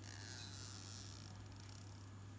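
Faint steady low hum, with a brief soft high hiss in the first second or so.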